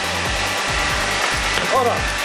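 Steady rushing of a hot fire in an open stove, as under forced draft, with metal tongs scraping over the coals as a red-hot cast-iron valve is dragged out.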